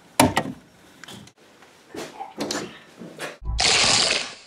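A few sharp clicks of a wall rocker switch being flipped, then a sudden rushing blast with a thump at its start about three and a half seconds in, lasting about a second.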